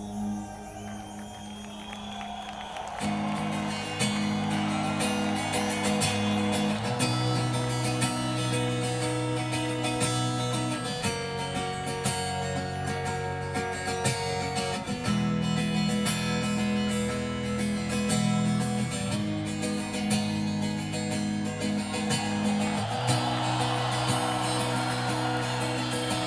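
Live clean electric guitar picking chords note by note over held low chords that change every few seconds. The picking comes in about three seconds in, after a softer held chord.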